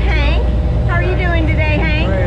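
People talking over the steady low drone of a party boat's engine.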